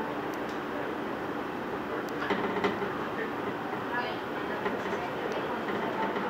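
Electric commuter train running at speed, heard from inside the carriage: a steady rumble and rail noise, with a few sharp clicks from the track.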